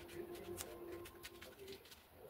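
Soft clicks and rustles of hands handling a foam RC model plane, over a faint low steady tone that stops shortly before the end.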